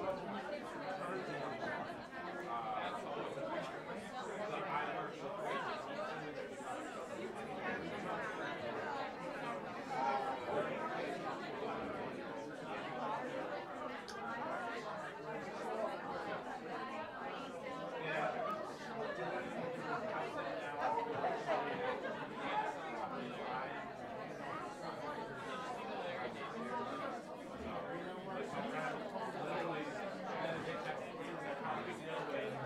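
Indistinct chatter of a seated audience, many voices talking among themselves and overlapping at a steady level.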